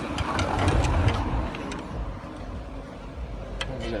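Several sharp metallic clicks from a hand tool working at a car's clutch and flywheel, over a steady low rumble that is loudest in the first half.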